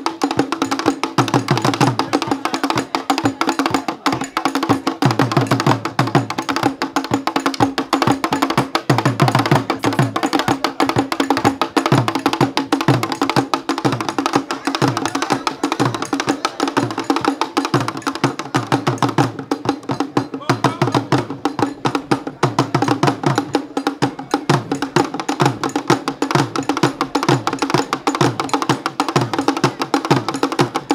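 Adowa dance music: fast Akan drum-ensemble percussion with a dense, rapid clicking pattern over repeated low drum strokes, running without a break.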